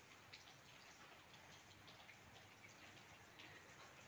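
Faint rain falling, with a few scattered drips.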